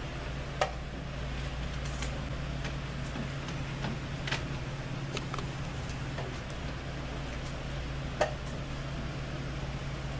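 Wooden chess pieces being set down on a board and chess clock buttons being pressed: sharp, scattered knocks and clicks, the loudest about half a second in and again near the end, over a steady low hum.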